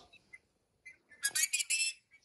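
A toddler's brief high-pitched squeal, starting a little over a second in and lasting under a second.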